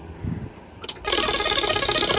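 A spinning prize wheel: a sharp click as it is set going, then its pointer ticking rapidly over the pegs. Background music with evenly spaced notes comes in at the same moment, about a second in.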